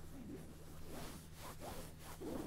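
Fabric rubbing and rustling close against the microphone, in irregular soft strokes: the sound of a thick jacket being squeezed in a hug, with a steady low hum underneath.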